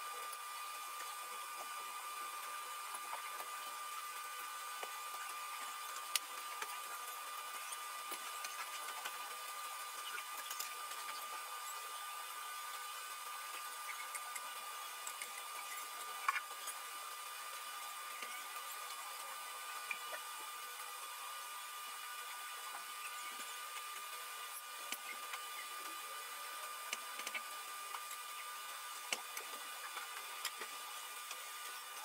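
A faint steady high-pitched whine, with a few light, sharp clicks scattered through as metal tweezers place small gold star pieces on resin-filled keychain molds.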